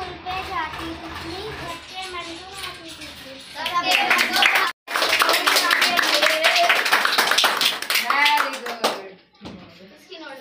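Children's voices, then from about four seconds in a group of children clapping their hands for about five seconds with voices over the applause, dying away near the end.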